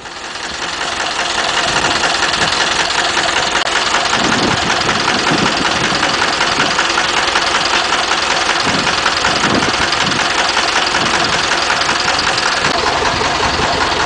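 Engine of a home-built four-wheel-drive tractor running steadily at idle, a dense even clatter that fades in over the first second or so.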